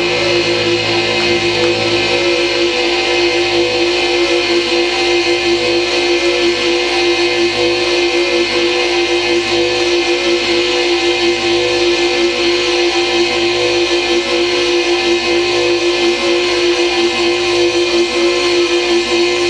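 Loud experimental live electronic rock music: a steady held drone tone over a low part that wavers and pulses about once a second. A few lower held notes drop out about two seconds in.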